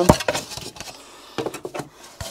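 Clear plastic seed-tray propagator lids being handled and fitted onto a seed tray: a sharp plastic knock at the start, then light clicks and rustling near the end.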